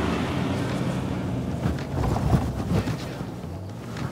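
Ford Ranger Raptor's 2.0-litre twin-turbo diesel engine working under load as the pickup climbs a sand dune, with wind noise on the microphone.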